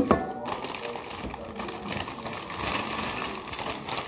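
Doritos tortilla chips being chewed close to the microphone: a rapid, irregular crunching, with a sharp crack at the start.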